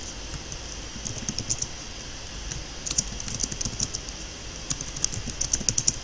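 Computer keyboard typing in quick bursts of keystrokes, with short pauses between the bursts.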